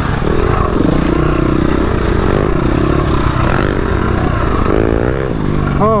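Dirt bike engine heard from on board while riding single track, its revs rising and falling with the throttle, over a steady rush of wind and trail noise.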